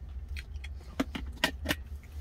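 Truck engine running as a steady low rumble heard inside the cab, with a handful of sharp light clicks and rattles over the last second and a half.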